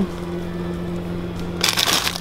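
A steady low hum, then near the end a burst of crackling and rustling from plastic packaging being handled.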